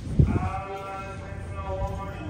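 A short knock, then a person's long drawn-out vocal call held for about a second and a half, wavering slightly in pitch.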